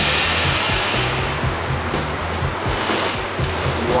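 Background music with a low bass line stepping between notes, over a steady hiss-like noise layer.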